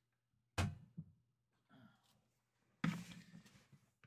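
Two dull thunks about two seconds apart, with a light tap just after the first and faint rustling after the second: knocks from objects being handled and set down.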